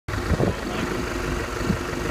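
Off-road 4x4's engine idling, a steady low rumble with a couple of dull knocks.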